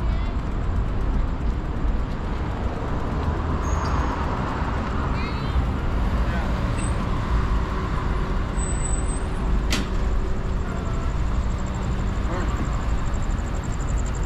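Steady low wind rumble on the microphone and rolling noise from a bicycle riding along a city sidewalk, with a sharp click about ten seconds in.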